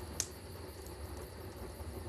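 Quiet background: a steady low hum and faint hiss, broken once by a short, sharp click a moment in.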